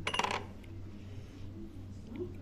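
A small ceramic dish set down, clattering and ringing briefly in the first half-second, followed by a low steady hum.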